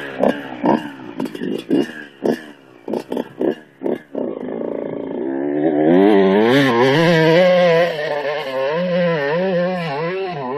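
Kawasaki KX125 two-stroke dirt bike engine revving unevenly in short throttle bursts as it pulls away. From about six seconds in it is held at high revs, the pitch swinging up and down as the bike climbs a steep, loose gravel hill.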